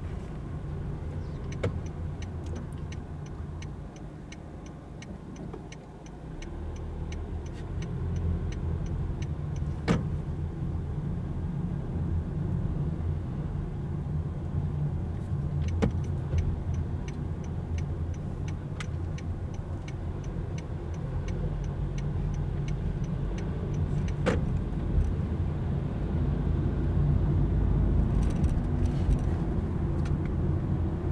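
Car running on the road, heard from inside the cabin: a steady low engine and road rumble that grows louder toward the end. A turn signal ticks evenly for several seconds near the start and again around the middle, with a few single sharp clicks in between.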